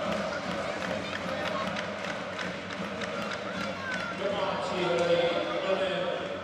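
Ice hockey rink sound: a murmur of crowd voices with frequent sharp clacks of sticks, skates and puck against the boards during a scramble for the puck. Near the end the voices swell into louder held shouts.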